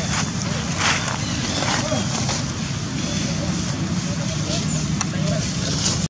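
Steady outdoor background noise: a continuous low rumble with indistinct voices in the distance and a few faint rustles.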